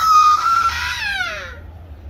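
A woman's loud, high wailing cry, held and then falling in pitch, dying away about one and a half seconds in.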